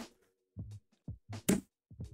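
Sharp plastic click as a Sahara Gaming Mirror 12 modular case fan snaps onto the chain of linked fans, about halfway through, with a few softer plastic knocks of handling before it.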